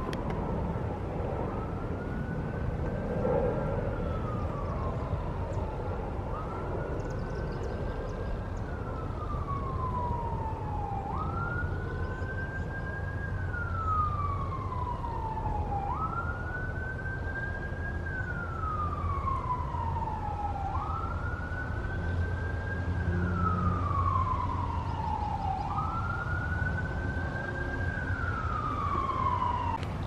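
An emergency-vehicle siren in its wail: each cycle rises quickly, holds briefly and falls slowly, repeating about every five seconds, over a steady low rumble.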